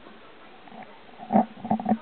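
A few short animal calls: one loud call about a second and a half in, then a quick cluster of shorter ones near the end, after a quiet start.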